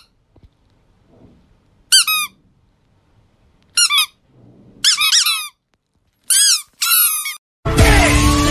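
Short bursts of high-pitched squeaks: about six bursts, each a quick run of several rising-and-falling squeaks, with near silence between them. Music cuts in loudly just before the end.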